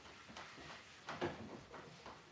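Faint swishes of a damp cloth wiping across a sanded wooden tabletop, with a slightly louder stroke a little past the middle.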